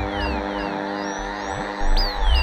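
Electronic music: a held chord with a quick falling high synth note repeating about four times a second, which fades out partway through, and a deep bass swell coming in near the end.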